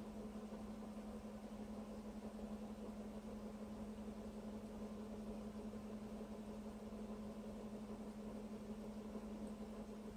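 Steady low hum with a faint even hiss under it, unchanging throughout; no distinct events.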